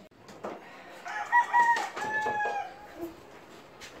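A rooster crowing once, starting about a second in and lasting nearly two seconds, the second half of the call a little lower and falling in pitch. A few faint knocks sound around it.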